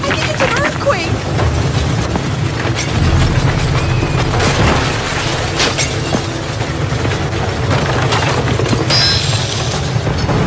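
A house shaking in a skyquake: a continuous low rumble with rattling and crashing dishes and furniture, the loudest crashes in the middle and near the end. Voices cry out near the start.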